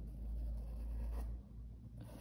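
Faint brushing of a paintbrush stroking paint onto cloth, over a low steady hum.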